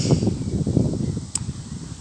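Wind buffeting a phone's microphone outdoors, a low irregular rumble, with one sharp click about a second and a half in.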